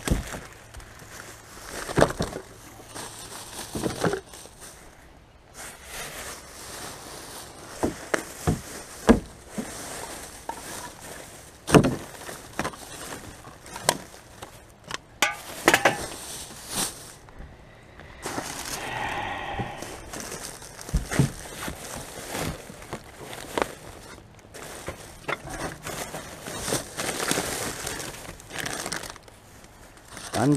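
Plastic bags and loose rubbish crinkling and rustling as gloved hands rummage through a plastic wheelie bin. Irregular sharp knocks and clatters come every few seconds.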